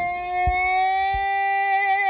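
A talk box driven by a keyboard synthesizer holds one long note. Its pitch rises slightly, then begins to waver near the end.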